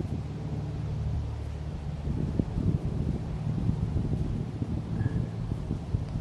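Steady low rumble of wind buffeting the microphone, rising and falling in gusts.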